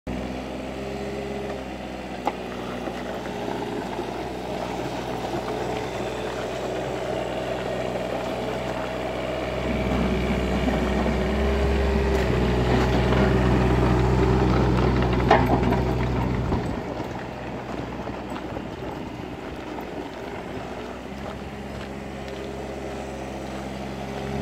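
Kubota KX36 mini excavator's diesel engine running steadily while the hydraulic arm, bucket and slew are worked. The engine note rises and gets louder for several seconds under load about ten seconds in, then settles back. There are a couple of short metallic clanks from the machine.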